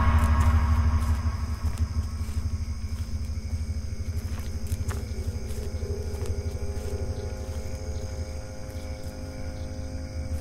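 Trailer sound design: a deep, steady rumble under a sustained droning chord, loudest at the start and slowly fading.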